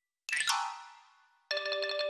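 A bright chiming flourish rings out and fades away. About one and a half seconds in, a xylophone starts playing quick repeated notes.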